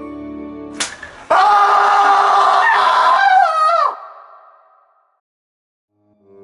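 Soft background music, broken off by a sharp slap-like hit just under a second in, then a loud, long cry of about two and a half seconds that bends down in pitch as it ends and fades away.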